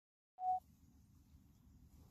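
A single short electronic beep, one steady mid-pitched tone, about half a second in, followed by a faint low rumble.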